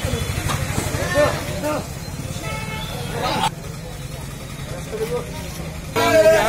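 A lorry's engine idling with an even low hum, with people's voices over it.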